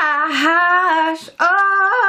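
A young woman singing a wordless tune in long held notes, with a short break just over a second in.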